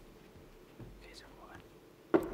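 Near silence with a faint whispered voice about a second in.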